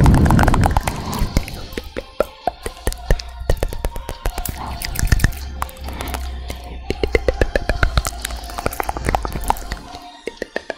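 Close-miked ASMR mouth sounds: a rapid, uneven run of wet clicks and pops, with a louder, fuller burst in the first second.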